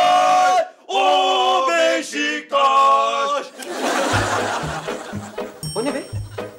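Men chanting a Beşiktaş football terrace chant loudly in unison, on long held 'lay lay lay' notes in short phrases. About three and a half seconds in, it gives way to a music cue with a steady low beat.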